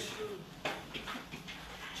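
A quiet pause in a meeting room: faint murmur of voices and a single sharp click or knock about two-thirds of a second in.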